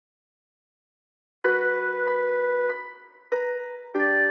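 A sampled keyboard-style melody loop playing back. There is silence at first, then sustained chords come in about a second and a half in, and a new chord starts near the end.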